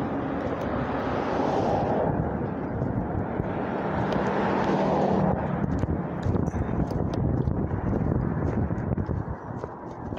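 Steady road traffic noise from cars passing on a busy street, loudest in the first two seconds as a vehicle goes by close, with another swell a few seconds later.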